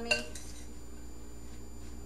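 A utensil clinking against a glazed ceramic mixing bowl while tossing salad: one sharp clink just after the start, then only faint stirring.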